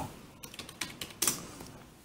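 About five faint, light clicks at irregular intervals, like keys being pressed on a computer keyboard.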